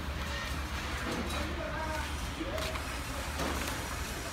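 A steady low machine hum, with faint voices in the background.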